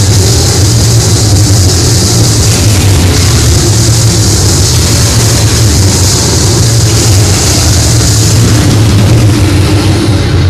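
Noisecore: a loud, dense wall of heavily distorted guitar and bass noise, with a steady low drone under a thick hiss that shifts every few seconds and no clear beat.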